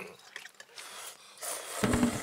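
A person slurping ramen broth straight from the bowl: noisy, wet sipping with small clicks, ending in a brief louder sound near the end.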